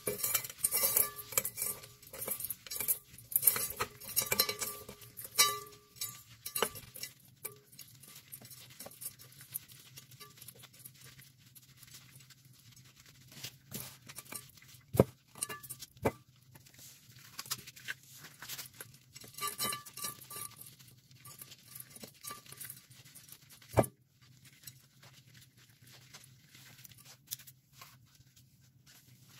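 A slab of dried Ajax cleanser paste being crushed by a rubber-gloved hand in an aluminium foil pan. Dense crunching and crackling for the first several seconds, then sparser crumbling with a few sharp knocks in the second half.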